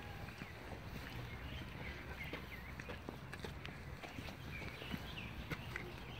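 Outdoor ambience: footsteps on a path over a steady low rumble, with a few faint bird chirps.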